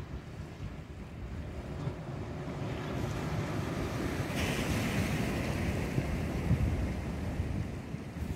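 Small waves breaking and washing up a stony beach, with wind buffeting the microphone. The wash swells and brightens about four seconds in, then eases.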